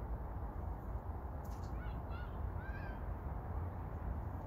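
Steady wind rumble on the microphone, with a brief rustle about a second and a half in and then a bird calling a few short, high chirped notes.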